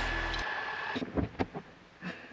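Piper Warrior's engine running steadily at taxi speed inside the cabin, cut off abruptly about half a second in; after that the cabin is quiet except for a few short thumps about a second in.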